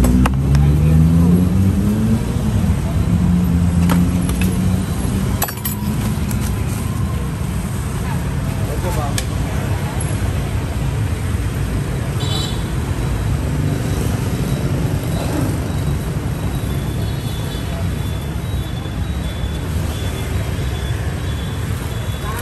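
Steady street traffic, mostly motorbike engines, with one engine revving up in the first couple of seconds. A few light clicks sound a few seconds in.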